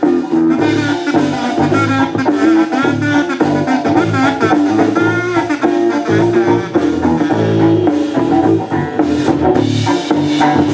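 Live band playing an instrumental break in a song: drum kit keeping a steady beat under bass and guitar, with a bending melodic lead line over the top.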